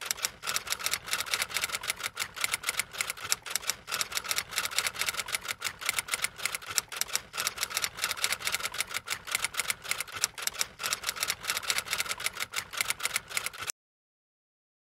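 Typing sound effect: rapid, uneven keystroke clicks, several a second, running without a break and stopping suddenly near the end.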